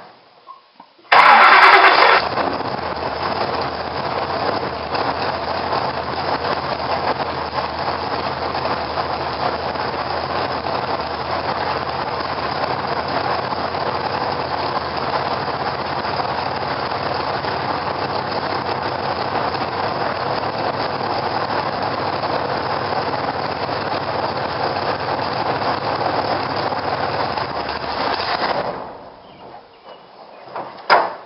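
Race car engine started up, heard from inside the cockpit: it fires with a loud burst about a second in, then idles steadily until it is shut off near the end and dies away.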